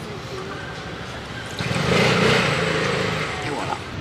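A motor vehicle passing in the street: its engine hum and tyre noise swell about one and a half seconds in, are loudest around two seconds, then ease off, over faint background talk.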